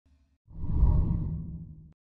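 A whooshing sound effect for an animated title card. It swells in about half a second in, sits mostly in the low range, then fades and cuts off abruptly near the end.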